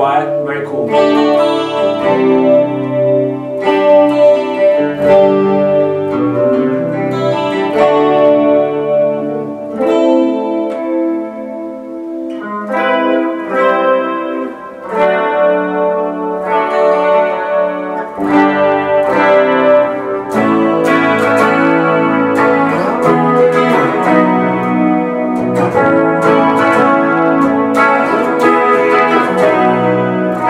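Gibson Les Paul electric guitar played through Amplitube 2 amp-modelling software on an '80s ballad' clean patch: clean chords and picked notes ringing out, with a softer passage about a third of the way through.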